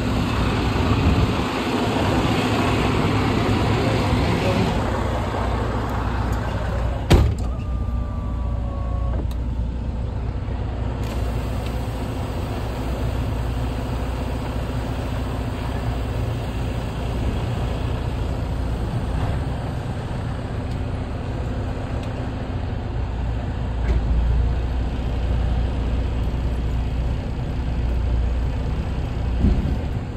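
Semi truck's diesel engine idling steadily. There is a hiss for the first few seconds, a sharp click about seven seconds in followed by a short falling tone, and a knock near the end.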